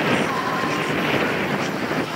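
Steady rushing of outdoor wind over the microphone.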